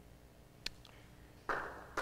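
Near-quiet pause: faint room tone with a single sharp click about two-thirds of a second in, then a short soft rush of noise near the end.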